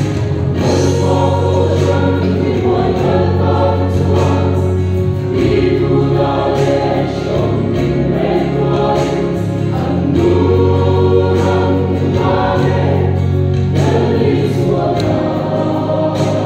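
Gospel song: a woman singing a solo with guitar accompaniment over long held bass notes.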